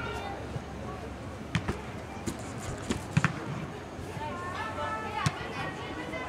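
A soccer ball being struck on an indoor turf field: a scatter of sharp thumps, the loudest a quick pair about three seconds in, with a player's drawn-out call shortly before the end.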